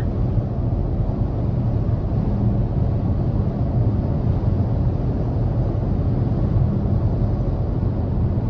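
Road noise inside the cabin of a 2023 Hyundai Tucson N Line cruising at highway speed: steady tyre and wind noise over a low, even hum.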